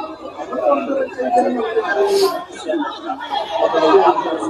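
Many voices talking and calling out over one another in a large hall: parliamentary deputies in uproar.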